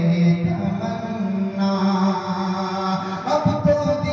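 A man's voice in melodic chanted recitation, sung into a handheld microphone, holding long notes that step up and down in pitch, with a new phrase starting about three seconds in.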